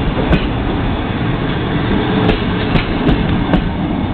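Passenger coaches of a train pulling out of a station rolling past close by, with a steady rumble and a few sharp, unevenly spaced wheel clicks over rail joints.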